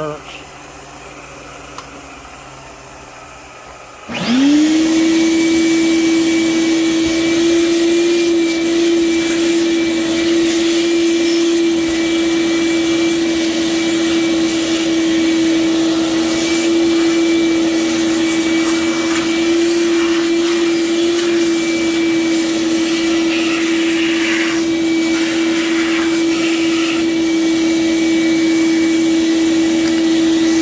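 Shop vacuum cleaning steel milling chips off a machine table. It switches on about four seconds in, its motor spinning up within a moment to a steady whine, runs evenly, and shuts off abruptly near the end.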